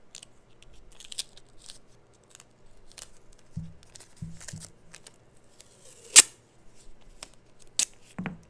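Masking tape being handled, pulled off the roll and torn by hand: scattered small clicks and rustles, a few dull thumps midway, and a sharp, loud tear about six seconds in.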